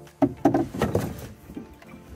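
Knocks and thumps on an aluminium canoe's hull as people climb aboard: a quick run of loud hits in the first second, then quieter knocking.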